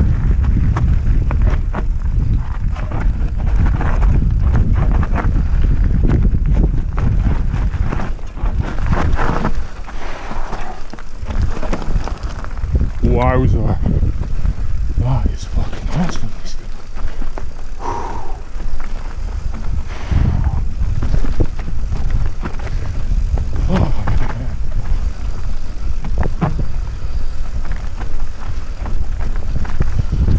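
Mountain bike descending rough dirt singletrack, heard from a helmet camera. Wind rumbles on the microphone, and the bike rattles and knocks over the bumps throughout.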